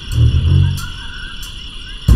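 Film soundtrack: a deep rumbling score that swells briefly and fades after about a second, under a steady high hum with short chirping calls repeated throughout.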